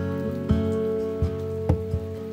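Background music of gently plucked acoustic guitar, with new notes struck about half a second, just over a second, and near two seconds in. Rain patters faintly underneath.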